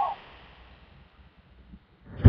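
The last of a shouted word cuts off right at the start, then only a faint steady background hiss with no other events.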